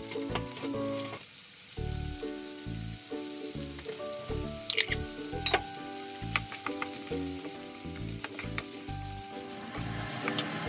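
Diced onion and sausage sizzling in a frying pan, stirred with a wooden spatula that clicks against the pan a few times around the middle. Soft background music plays under it.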